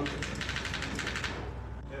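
A rapid, regular run of sharp clicks, about ten a second, that stops about a second and a half in, over a steady low hum.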